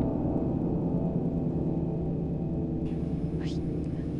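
Dramatic background score holding a low sustained drone chord that slowly fades, with a short rising swish near the end.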